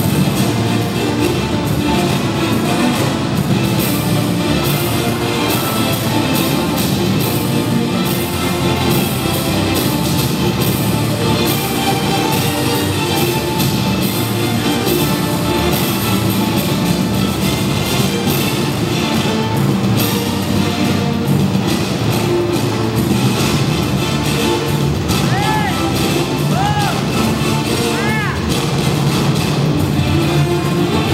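Loud, continuous freestyle music for a yo-yo routine, with a few short arched tones that rise and fall near the end.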